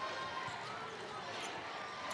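Basketball being dribbled on a hardwood court, a few faint bounces over the steady noise of an arena crowd.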